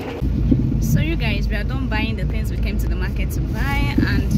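Steady low rumble of a car running, heard from inside the cabin, cutting in suddenly just after the start.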